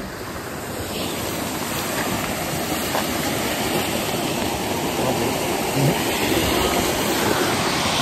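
A steady rush of flowing spring water from a stream, growing slightly louder.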